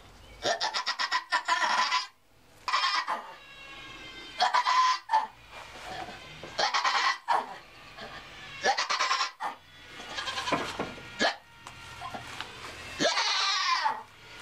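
Nigerian Dwarf doe in labour bleating loudly and repeatedly, about seven calls roughly every two seconds, some of them wavering, as she strains during contractions.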